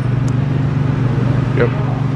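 Nissan G35's 3.5-litre V6 idling steadily with its catalytic converter hollowed out, running smoothly without the shaking of its earlier misfire.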